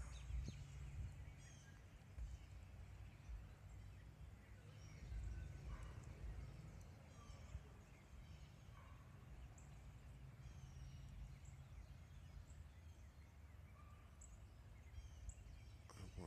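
Faint outdoor ambience: a steady low rumble with scattered faint, short, high bird chirps.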